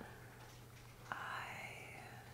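A woman's faint, breathy, near-whispered "I" starting about a second in, over a low steady hum.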